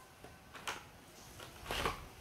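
Small plastic toy pieces and clear plastic packaging being handled: a faint click about two-thirds of a second in, then a short rustle near the end.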